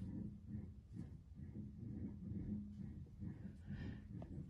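Faint, low, uneven rumble with a steady hum, coming from inside a house wall. It appears to be connected to the air vents and also occurs when the pool equipment comes on; its cause is unknown.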